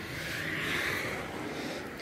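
Steady outdoor background hiss with no distinct events. It swells slightly and then eases.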